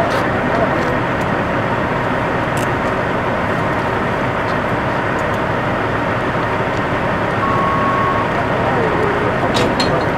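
A steady, loud engine-like rumble and hiss, as from a vehicle running nearby, with faint voices beneath it. A brief high tone sounds about three-quarters of the way in, and a couple of sharp clicks come near the end.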